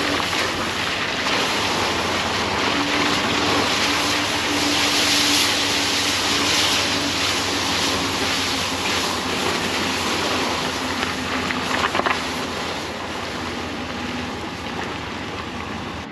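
Steady rush of wind and tyre noise from an SUV driving on a snowy, icy road, heard from outside the vehicle's side window, with a faint low engine hum underneath. A few sharp knocks about twelve seconds in.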